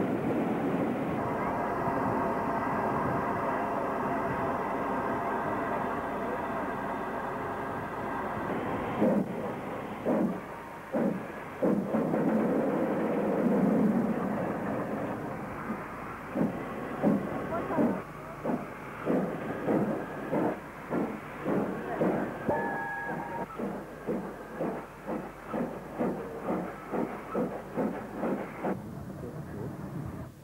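Steam locomotive: a steady hiss of steam for about the first nine seconds, then exhaust beats that start slowly and quicken to about two a second as the engine gets under way.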